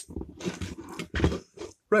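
A man's low, wordless vocal noises, such as mumbling or breathing, with a sharp click right at the start and a short louder burst about a second in.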